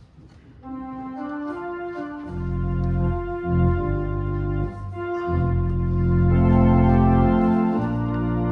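Organ playing a hymn introduction: held chords, with deep bass notes coming in about two seconds in and swelling near the end.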